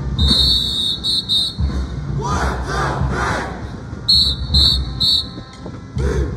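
Marching band drumline playing a cadence with deep bass drum beats. A whistle gives one long and two short blasts near the start and three short blasts about four seconds in, and band members shout a chant in between.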